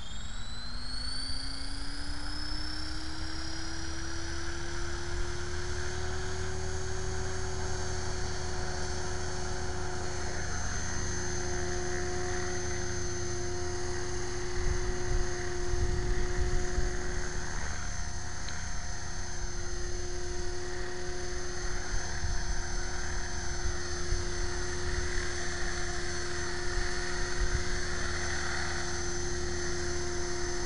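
Align T-Rex 500 electric RC helicopter spooling up: the motor and drivetrain whine rises in pitch over the first few seconds, then holds steady at head speed under the rotor blade noise.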